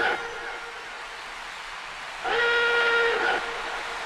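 Breakdown in a bounce/donk dance track with no beat. A quiet stretch is followed, a little past halfway, by a single held high note with rich overtones that lasts about a second.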